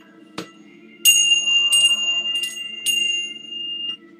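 A small high-pitched bell struck four times over about two seconds, starting about a second in. It rings on between strikes and is stopped short near the end, marking a pause in the prayer service.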